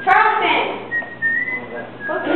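A voice briefly, then a person whistling a long high note that steps up and rises slightly before stopping.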